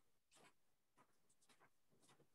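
Near silence on a video call: room tone with a few faint, short scratchy sounds.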